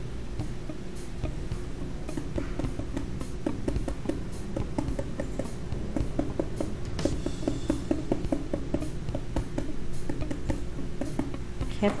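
Background music with steady held notes, over many quick light taps of a small dry paintbrush dabbing paint through a plastic stencil onto painted MDF.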